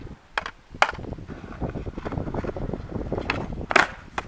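Skateboard wheels rolling over concrete, with a few sharp clacks of the board early and a loud clack near the end.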